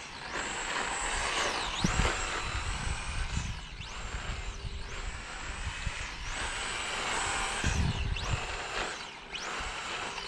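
Brushless electric motor of a radio-controlled Hoonitruck (3500 kV, on a 2S battery) whining as the car is driven, its pitch dipping and climbing again about six times as it slows and accelerates through turns. The power is starting to fade, so the driver thinks.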